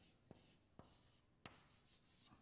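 Chalk writing on a blackboard: four faint, short taps and scrapes as letters of a word are chalked.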